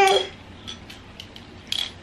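A voice trails off at the start, then a few light, scattered clicks and taps of small objects being handled, the sharpest one shortly before the end.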